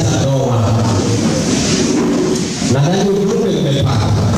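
A man's voice speaking into a handheld microphone.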